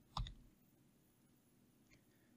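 A single computer keyboard keystroke shortly after the start, followed by near silence, with one faint tick near the end.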